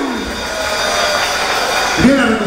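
Audience applauding in a large hall, a steady dense clapping.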